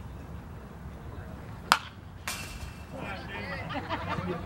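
A single sharp pop of a pitched baseball into the catcher's mitt, the loudest sound, a little under two seconds in. Shouted voices follow.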